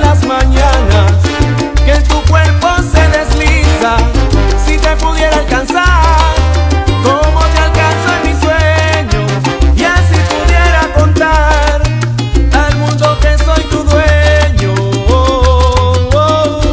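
Instrumental break of a salsa romántica song, without vocals: a band playing a moving bass line under steady percussion and melodic instrument lines.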